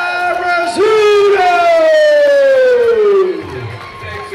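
Ring announcer over the PA, stretching out the new champion's name in one long held note. About a second in it swoops upward, then slides down in a long falling glide that dies away a little after three seconds in.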